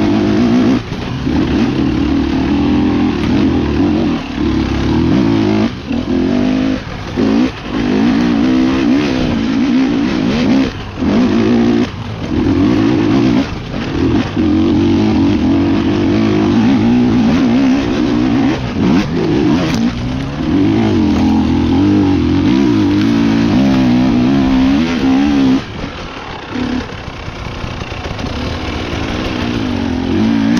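Enduro dirt bike engine, heard from the rider's own bike, revving and dropping off again and again as the throttle is opened and closed over rough trail. It settles to a lower, quieter note a few seconds before the end, then picks up again.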